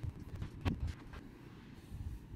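A few soft knocks and rustles of a cardboard box being handled, bunched about half a second to a second in, over a low steady rumble.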